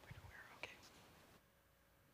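Near silence with a faint voice speaking softly in the first second and one small click; the background drops quieter about one and a half seconds in.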